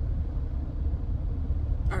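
Car engine idling, heard inside the cabin as a steady low rumble.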